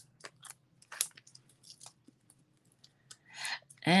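Light crinkles and small clicks of cardstock and foam adhesive pieces being handled and pressed down on a handmade card, with two sharper clicks near the start and about a second in, and a short rustle near the end.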